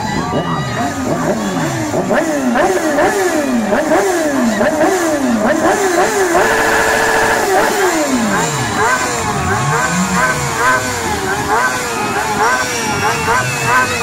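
Sport motorcycle engines revved hard while standing still. The pitch climbs and drops about once a second, is held high for about a second near the middle, then falls away into quicker, shorter blips near the end.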